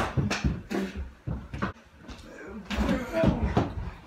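Voices of people scuffling about, with a series of sharp knocks and thumps in the first couple of seconds.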